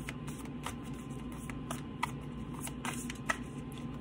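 A deck of tarot cards shuffled overhand by hand: soft, irregular card slaps and flicks, several a second.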